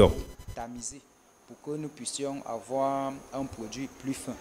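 A person's voice speaking quietly, ending in one drawn-out, buzzing vowel; there is a brief silence about a second in.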